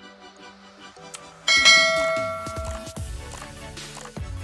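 Background music, with a subscribe-button sound effect laid over it: a click, then about a second and a half in a loud bell-like chime that rings and fades over about a second and a half.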